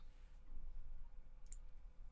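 A couple of faint clicks about a second and a half in, over quiet room tone with a low steady hum.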